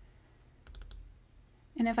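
A quick run of four or five computer mouse clicks a little under a second in: double-clicking to open a folder.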